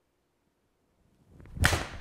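A Mizuno MP-20 HMB 4-iron swung and striking a golf ball off a hitting mat: one sharp, loud crack of impact about one and a half seconds in, fading quickly.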